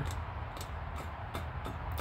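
Outdoor background in a pause between words: a steady low rumble with a few faint, irregular clicks.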